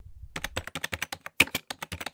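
Computer keyboard typing sound effect: a rapid run of key clicks, about ten a second, opened by a brief low rumble.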